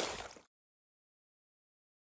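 Dead silence, an edit gap with no sound at all, after a brief fade-out of outdoor noise in the first half second.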